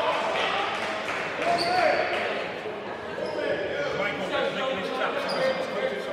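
Overlapping voices of players and spectators echoing in a school gymnasium, with three short high sneaker squeaks on the hardwood floor.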